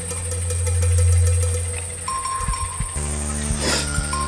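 Dramatic background film score: a low synthesizer drone swells and fades, then about three seconds in it changes to a new sustained chord with a high ringing tone, and a brief bell-like shimmer comes near the end.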